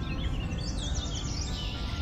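Birdsong: quick high chirps, then a run of falling whistles about half a second in, over a steady low background noise.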